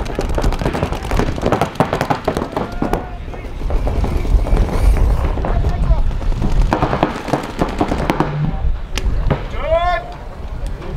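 Paintball markers firing in rapid overlapping strings of sharp pops, densest in the first few seconds and again shortly before the end, over a rumble of outdoor noise. Players shout over the firing, with one drawn-out call near the end.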